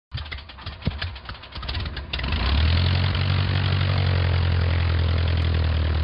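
An engine starting: about two seconds of uneven, sputtering turning-over, then it catches and runs steadily with a deep, even drone.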